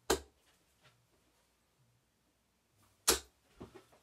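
Two 23-gram, 90% tungsten darts striking a bristle dartboard: two sharp thuds about three seconds apart.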